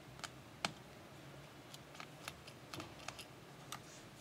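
A plastic pry tool working around a smartphone's frame: about ten short, light clicks and snaps at an irregular pace, the sharpest about half a second in.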